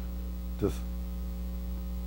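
Steady low electrical mains hum.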